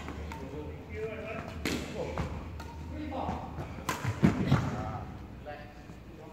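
Badminton racket striking a shuttlecock during a rally: two sharp hits, about two seconds in and again about four seconds in, with players' voices calling out between them.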